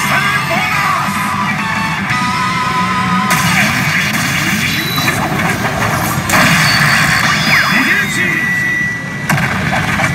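Pachinko machine (PA Hana no Keiji Ren) playing its loud bonus-round music and sound effects as a big hit begins, with a recorded voice over it.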